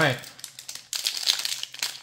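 Foil booster-pack wrapper crinkling as it is peeled open by hand: a rapid, irregular run of crackles.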